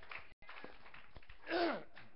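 Quiet room noise with faint scattered knocks and shuffles, and one short voice sound falling in pitch about one and a half seconds in. The audio drops out completely for a moment near the start.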